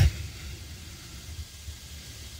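A pause in speech: only a faint, steady hiss with a low rumble, the recording's background noise.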